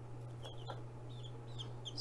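Baby chicks (Rhode Island Red/ISA Brown, a few days old) peeping faintly, about half a dozen short high peeps, over a steady low hum.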